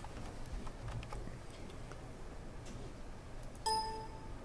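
Quiet room tone with a few faint clicks, then a short electronic chime near the end as the Excel Solver results dialog pops up.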